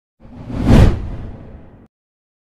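Whoosh transition sound effect marking a slide change: it swells to a loud peak under a second in, then tails off and cuts out suddenly near the end.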